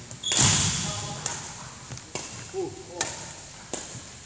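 Badminton rally sounds in a large hall: a loud hit with ringing echo just under half a second in, then sharp racket-on-shuttlecock hits roughly once a second. Quick footsteps and shoe sounds on the wooden court and a short vocal sound come between the hits.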